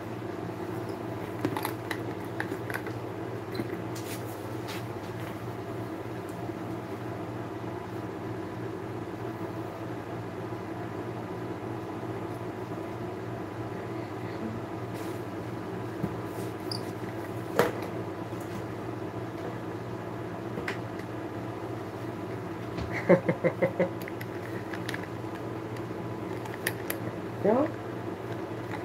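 Steady low mechanical hum in a small room, with scattered light clicks and a short patch of quick rattling knocks near the end as a leather handbag and its metal hardware are handled.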